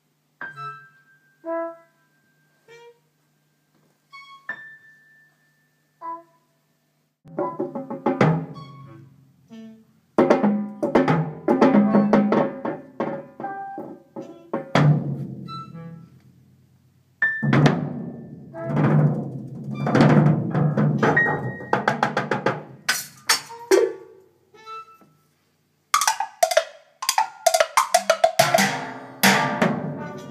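Jazz big band and a multi-percussionist rehearsing a modern piece. For the first few seconds there are only sparse, ringing percussion strikes. Then the full band comes in with loud drum hits and, near the end, bright cymbal crashes.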